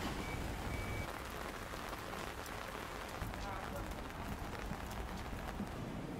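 Steady rain falling, with many individual drops hitting close by.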